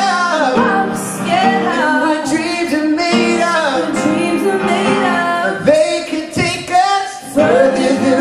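Live duet ballad: a woman singing lead into a microphone with held, wavering notes, over upright piano accompaniment.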